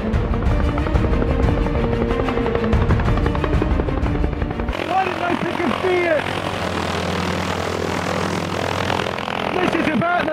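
Helicopter with a two-bladed rotor flying close by, a loud, steady chop with an engine hum. About five seconds in it cuts off suddenly, giving way to a quieter stretch with music.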